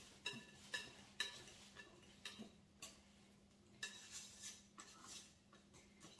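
Wire whisk clicking faintly against the side of a glass mixing bowl while a thick, set-up lemon icebox pie filling is stirred: about ten light, irregular ticks.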